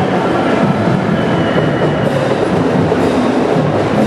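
A parade marching band playing, heard as a loud, dense, unbroken wash of sound in the street.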